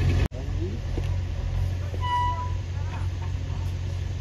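Heavy diesel engine idling with a steady low rumble. About two seconds in, a short high beep sounds once.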